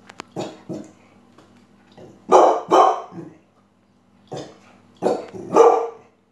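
A dog barking in short bursts, about seven barks in all, the loudest pair a little over two seconds in.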